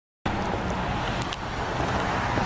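Steady low rumble of outdoor background noise, with a few faint clicks, starting a moment in after a brief silence.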